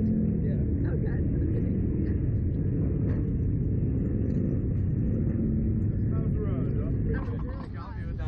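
Wind buffeting the microphone of a camera mounted on a Slingshot reverse-bungee ride capsule as it swings, a steady low rumble. The rumble drops off about seven seconds in as the capsule comes to rest.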